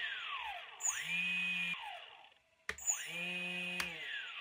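A small brushless outrunner motor driven by an electronic speed controller, spinning up and winding down in short runs. Each run is a rising whine that holds high, then falls away. There are about three runs, and a sharp click comes just before the last spin-up.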